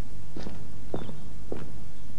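Footsteps on a hard surface: three evenly paced steps, about two a second, over a steady low hum.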